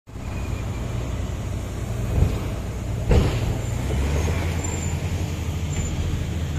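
Heavy mining vehicle's diesel engine running with a steady low drone; its note changes about four seconds in. Two thumps come at about two and three seconds.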